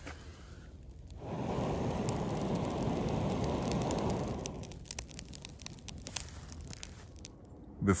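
A steady rushing lasting about three and a half seconds as the smoking leaf and pine-needle tinder in a small perforated metal burner flares into flame, then scattered crackles of the burning leaves.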